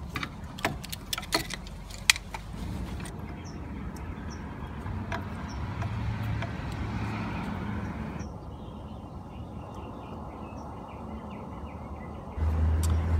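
A few sharp metal clicks and knocks as a wrench and brass valve parts are handled. After that, a steady low background rumble swells and fades in the middle.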